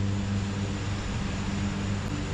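Steady low mechanical hum of a running motor or engine, an even drone with no change in pitch.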